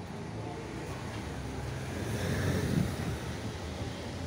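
Street traffic. A passing vehicle's engine and tyre noise swells to a peak a couple of seconds in, then fades.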